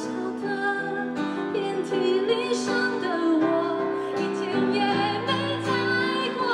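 A woman singing a Mandarin pop song live, with vibrato on held notes, accompanied by keyboard and guitar.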